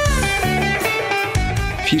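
Rock band playing live, with electric guitar in front and drums under it.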